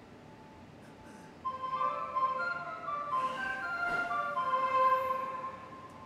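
Electronic platform chime melody from the station speakers: a run of ringing notes that starts about a second and a half in and fades out near the end.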